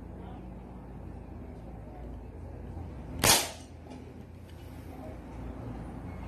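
A single shot from a homemade PVC combustion gun fuelled with pure denatured alcohol and no lacquer thinner: one sharp bang a little past the middle, with a brief ringing tail.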